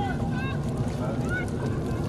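Wind rumbling on an outdoor microphone over wind-rippled water, with a few short high chirps.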